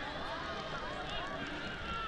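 Football stadium ambience: faint, distant shouts from players and spectators over a steady background hum.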